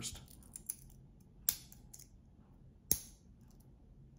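Light metallic clicks of a stainless steel watch bracelet and its clasp being handled, the links knocking together; two sharper clicks come about a second and a half in and near three seconds in.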